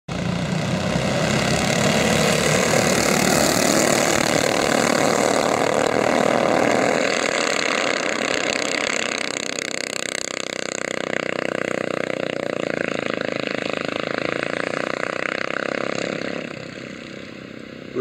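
A pack of racing go-kart engines running together at speed, loud for the first several seconds, then a little quieter as the karts spread around the track, and falling away sharply near the end.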